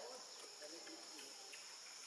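A steady, high-pitched insect chorus of crickets or cicadas, with faint wavering low sounds beneath it.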